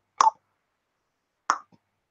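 Two single tongue clicks, about a second and a quarter apart.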